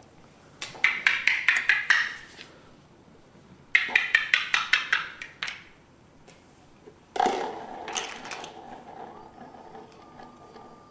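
Plastic toy blocks tapped together in two quick runs of about eight taps each, a few seconds apart. A longer held sound with a steady pitch follows about seven seconds in.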